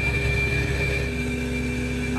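Shrimp trawler's net winch paying out as the nets are let down to the seabed: a steady high whine over the boat's low engine rumble, with a lower steady hum joining about halfway through.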